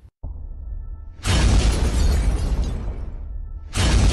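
Cinematic trailer-style sound effects over a low rumbling drone: a sudden loud, crash-like hit about a second in that fades away over about two seconds, and a second hit just like it near the end.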